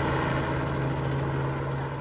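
A small helicopter in flight, its engine and rotor giving a steady drone with one strong low tone.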